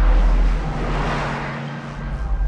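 Cinematic sound-design effect: a deep rumble under a swelling whoosh that peaks about a second in and then fades.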